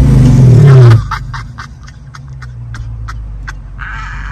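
Dodge Charger Scat Pack's 392 HEMI V8 revved hard once, very loud for about a second, pitch rising and falling back, then settling to a steady idle. A string of short, sharp, irregular clicks follows over the idle.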